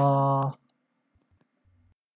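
A man's voice holding a drawn-out, level 'uhh' for about half a second, then a faint click of a computer mouse as a button is pressed.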